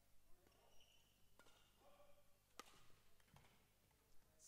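Faint, sharp hits of a badminton racket striking the shuttlecock during a rally, three about a second apart, in an otherwise quiet hall.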